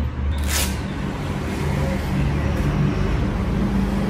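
Steady low rumble of background noise, with a brief hiss about half a second in.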